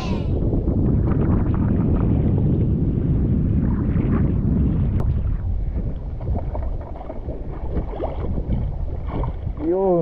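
Wind buffeting the microphone on a small outrigger fishing boat at sea, with water sloshing against the hull. The rumble is heaviest for the first six seconds and eases after that.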